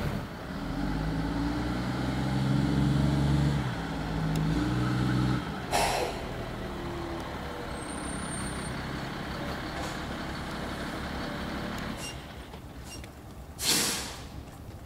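Engines of armored SWAT trucks running as the trucks drive up, with a change in pitch about four seconds in and fading after five seconds. A short loud hiss comes about six seconds in, and a louder one near the end.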